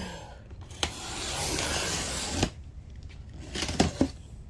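Box cutter slicing along the packing tape on a cardboard box: one long hissing cut of about a second and a half that ends with a sharp click, followed by a few clicks and knocks of the cardboard near the end.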